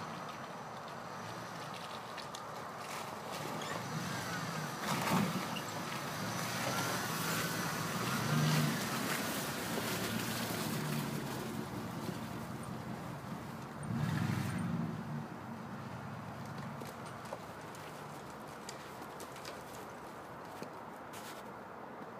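Dodge Ram pickup engine working through muddy, snowy ruts, rising in surges of revving about 5, 8 and 14 seconds in, with a wavering whine between the first two, then dropping to a quieter run.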